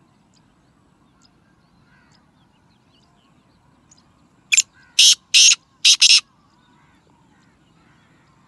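Black francolin calling: a quick run of four loud, hoarse notes, about a second and a half in all, just past the middle.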